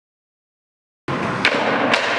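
Silence for about a second, then a skateboard on a concrete skatepark floor: steady wheel rumble with two sharp clacks about half a second apart.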